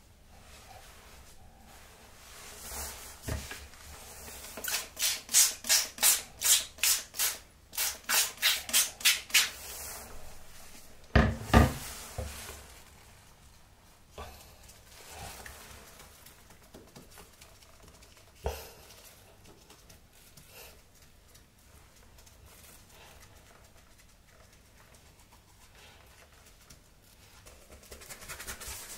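Gloved finger rubbing a wet paper towel against a bathtub edge and wall tiles in a run of quick, even strokes, about three a second, for several seconds. About eleven seconds in there is a single knock, and after that only faint, scattered handling sounds.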